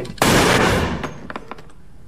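A single loud handgun shot about a quarter of a second in, cutting off a man mid-sentence; it dies away over most of a second.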